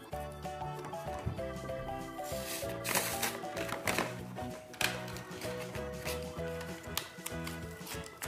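Light background music with a plain melody, over which cardboard packaging is torn and rustled a few times, loudest about three seconds in.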